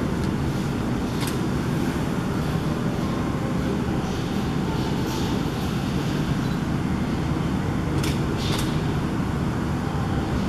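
Steady low rumbling background noise, even in level, with a few brief faint clicks about a second in and twice near the end.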